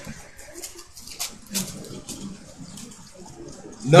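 Pages of a Bible being turned: a few short, soft paper rustles, the clearest about a second and a second and a half in.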